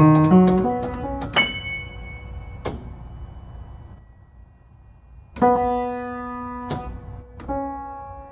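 Boardman & Gray upright piano playing by itself through its wired player mechanism: a quick run of notes, then a few separate chords, each struck sharply and left to ring and fade, with a quiet gap before the later chords.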